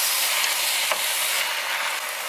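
Beef and seaweed sizzling in sesame oil in a stainless steel pot as they are stirred, with a light tap of the stirring utensil against the pot about a second in.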